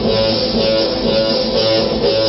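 Electric guitar playing an instrumental passage, a short figure that repeats about every two seconds.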